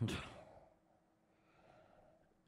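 A man sighs: a breathy exhale at the start that fades away over about half a second, with a faint breath near the end.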